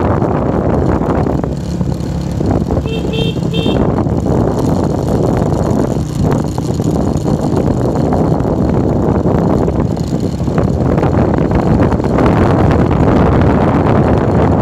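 Motorbike riding: steady rumble of wind buffeting the microphone over the bike's engine, with a few short high beeps about three seconds in.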